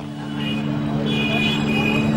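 Street traffic ambience: a steady vehicle engine hum with voices in the background.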